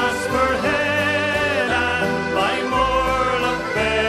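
Irish folk music: an instrumental passage with a wavering, vibrato-laden melody line over steady low bass notes.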